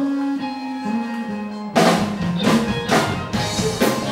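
Live band of electric guitar, bass guitar and drum kit playing: held guitar and bass notes at first, then about two seconds in the drums come in with loud hits and the full band plays on.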